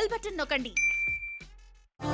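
A single electronic notification ding: one clear, steady bright tone lasting about two-thirds of a second, starting just as a voice stops speaking, then fading away.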